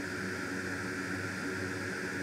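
Steady whooshing fan noise with a faint underlying hum, unchanging throughout.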